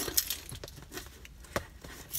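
A key scraping and poking at the tape on a cardboard box: quiet scratches and small clicks, with one sharper click about one and a half seconds in.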